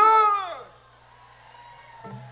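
A man's drawn-out whoop shouted into a stage microphone through the PA, rising then falling in pitch and dying away within the first second. After it, only a faint steady low hum.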